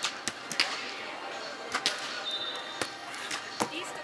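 Volleyballs being struck by hand on the sand courts: about six sharp slaps at uneven intervals, echoing in a large domed hall over a bed of voices.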